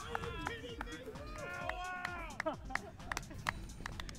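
A group of men shouting and whooping in celebration, their voices rising and falling, with a few short sharp smacks among them.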